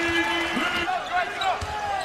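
Basketball dribbled on a hardwood court: a few dull bounces under arena crowd noise.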